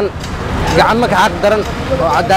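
A man speaking Somali close to the microphone, with a steady hum of street traffic behind him.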